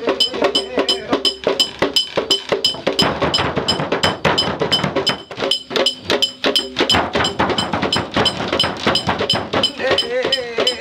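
Fast, steady ritual percussion for a Mentawai bird dance: about four to five sharp strikes a second with a bright ringing edge, with a denser clatter of strikes and stamping in the middle. A chanting voice joins near the end.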